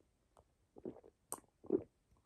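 A person drinking from a cup: a few short sips and swallows, the loudest swallow near the end.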